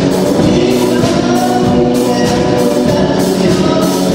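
Live song: a young woman singing into a microphone, backed by a small band of electric guitar, double bass, small plucked string instruments, accordion and keyboard, with a steady strummed pulse.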